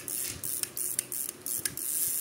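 Small Daiwa spinning reel cranked by hand, its gears and mechanism giving a string of irregular light clicks. The handle turns without grinding or wobble, a sign of a reel in good working order.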